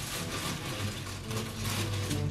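Crinkly plastic chip bag rustling as a hand rummages inside it. The rustle starts suddenly and keeps going.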